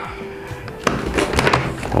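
Faint background music, then from about a second in a run of knocks and clicks from a motorcycle helmet being handled as its foam liner is about to be pulled out.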